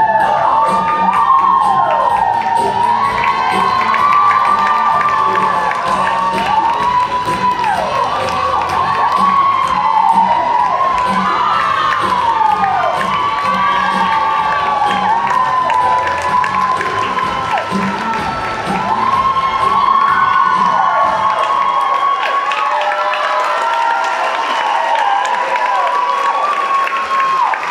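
Audience of children cheering, many high voices rising and falling in pitch and overlapping, with music faintly underneath.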